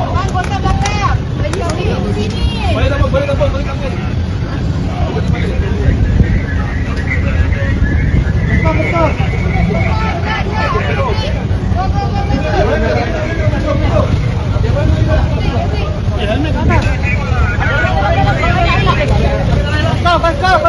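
A group of people talking and calling over one another, over a steady low rumble.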